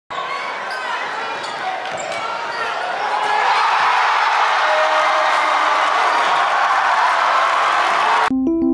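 Basketball dribbling and sneaker squeaks on a hardwood gym floor over a murmuring crowd. About three seconds in, the gym crowd erupts into loud cheering that holds.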